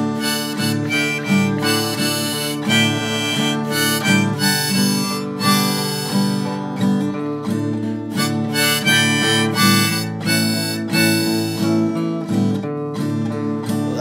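Instrumental break in an acoustic country-blues song: a harmonica plays a run of held notes over strummed acoustic guitar.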